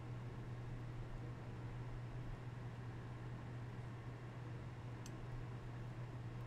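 Faint room tone: a steady low hum under a light hiss, with one faint tick about five seconds in.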